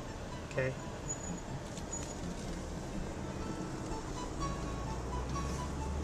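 Car interior noise as the car drives slowly, a steady engine and road rumble that grows deeper and louder about four and a half seconds in as it pulls away.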